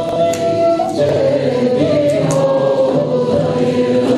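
A choir singing a Turkish folk hymn (ilahi) in long held notes that step from pitch to pitch, with a few light frame-drum strikes.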